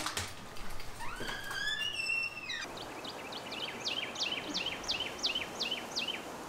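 A brief knock right at the start, then birds singing: a few rising whistled calls, followed by a run of repeated down-slurred whistled notes, about three a second.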